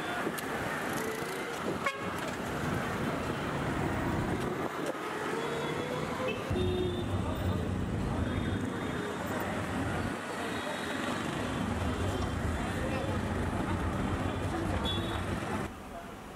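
Busy street traffic of auto-rickshaws and cars driving past, with short horn toots several times from about six seconds in.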